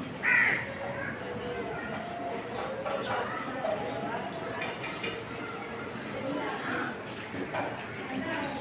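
One loud, harsh bird call about half a second in, over a steady background of distant voices.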